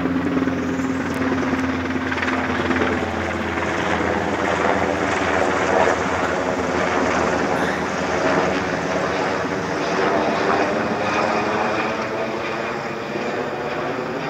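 A loud helicopter flying low and slow overhead, its rotor beating steadily. The sound eases a little near the end.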